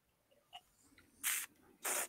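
Two short hissing breaths about half a second apart as a sip of whisky is tasted, with a faint click before them.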